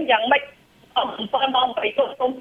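Speech only: a voice talking in a thin, telephone-like sound, with a brief pause about half a second in.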